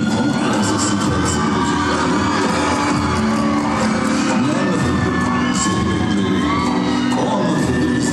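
Turkish folk dance music playing loudly in a large hall, with a melody line that slides in pitch over sustained low notes and a steady percussion beat, while a crowd cheers and whoops over it.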